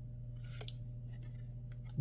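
Faint rustle and click of glossy trading cards being slid through a stack by hand, over a steady low hum.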